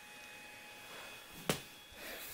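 Quiet indoor room tone with a few faint steady high tones, broken by a single short sharp click about one and a half seconds in.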